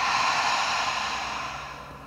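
A woman's long audible sigh: a breathy exhale, the release of a deep cleansing breath, fading away toward the end.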